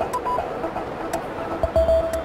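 TV channel clock-countdown music: a light electronic tune of short notes over regular clock-like ticks, counting down to the top of the hour.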